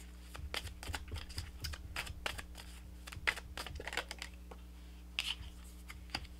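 A deck of tarot cards being handled as a card is drawn: a run of quick, irregular clicks and light snaps of card edges for about four seconds, then a few more near the end.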